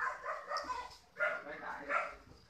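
A dog barking several short times in the background.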